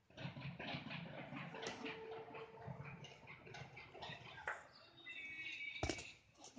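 Birds chirping over outdoor background noise, with a sharp thump just before the end.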